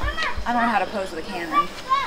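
A woman's voice making wordless sounds that rise and fall in pitch, ending in two short high notes.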